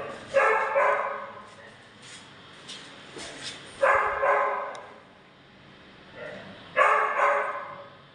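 A dog barking: three outbursts about three seconds apart, each of two quick barks.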